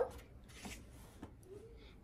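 Quiet room with faint rustling of a construction-paper circle being handled, and a faint short hum shortly before the end.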